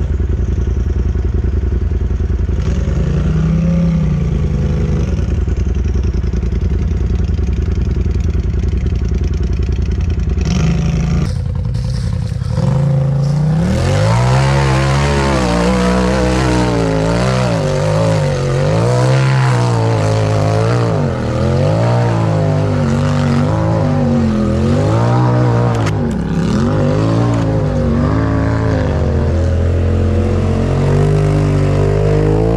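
Side-by-side engine idling steadily with one brief rev. Then an off-road buggy's engine revs up and drops back again and again, roughly once a second, as it works under load up a steep dirt hill climb.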